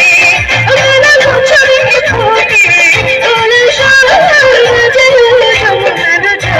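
A woman singing an ornamented, wavering melody into a microphone, backed by a live band with keyboard and a pulsing low beat, loud through the PA.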